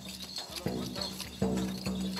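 Hand-beaten frame drum playing a steady folk rhythm: deep ringing beats, about two or three a second, with bright jingling over them.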